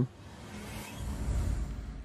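A van's engine running, a low rumble under a steady hiss that grows louder about halfway through.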